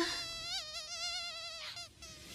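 Rubber squeaky toy squealing in one long, slightly wavering tone as it is bitten down on, fading out near the end.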